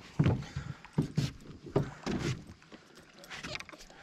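Scattered light knocks and clatters, about seven at irregular spacing, from gear being handled in a canoe.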